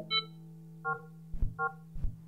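Improvised electronic music: about four short synthesized beeps at changing pitches, some high and some lower, over a steady low drone, with soft low thuds between them.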